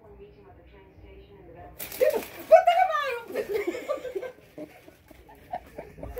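A woman laughing and squealing in surprise as she opens a gift box, just after a sudden short burst of noise about two seconds in.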